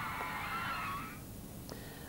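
Crowd of teenage girls screaming, many shrill voices overlapping; the screaming fades out about a second in.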